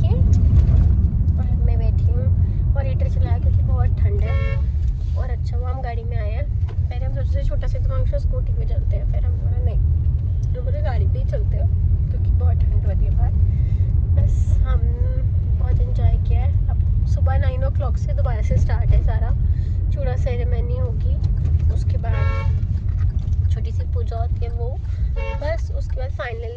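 Steady low rumble of road and engine noise inside a moving car's cabin, with voices talking over it.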